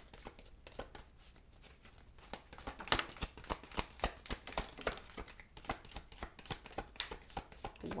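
Oracle card deck shuffled by hand: an irregular run of quick card clicks and flicks, with a few cards dropping out onto the table.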